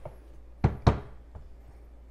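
Two sharp knocks about a fifth of a second apart, then a fainter tap: hard coffee-prep gear knocked or set down on the counter.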